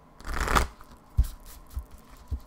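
A deck of tarot or oracle cards being shuffled by hand: a short rustling riffle about half a second in, then two soft low thumps as the deck is handled.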